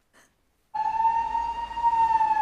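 Emergency vehicle siren over street background noise, cutting in suddenly about three quarters of a second in: one slow wailing tone that rises slightly and then begins to fall.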